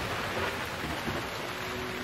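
Thunderstorm sound effect: a steady hiss of rain with the rumble of a thunderclap slowly dying away.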